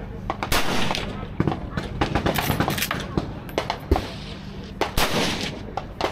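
Gunfire on an outdoor shooting range: a string of sharp gunshots at uneven intervals, the loudest about half a second in, again near one and a half seconds and near four seconds, with fainter shots mixed in between.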